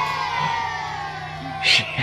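A person's long, drawn-out vocal cry, slowly falling in pitch over about a second and a half, followed by a short hiss near the end.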